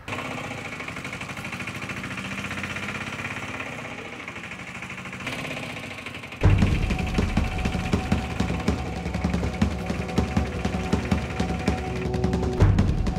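Auto-rickshaw engine running with a steady, even putter. About six seconds in, loud background music with a low, pulsing beat and a held note cuts in over it.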